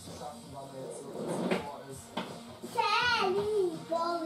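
Voices from a television programme in the room, with a high, swooping, cartoon-like voice about three seconds in.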